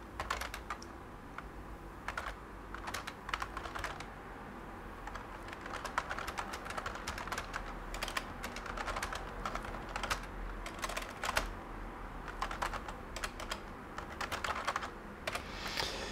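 Typing on a computer keyboard: irregular runs of quick key clicks, entering shell commands.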